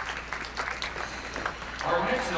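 Scattered audience clapping, with a voice starting to speak near the end.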